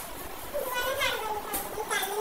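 A young child's high-pitched voice, talking or calling out in a sing-song way, starting about half a second in.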